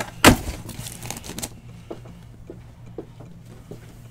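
Cardboard case of card boxes being handled on a table: one loud thump just after the start, then about a second of scraping rustle, then a few faint light clicks.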